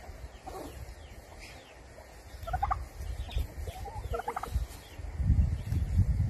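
White domestic turkey tom gobbling three times, short warbling bursts spaced about two seconds apart. A low rumbling noise rises near the end.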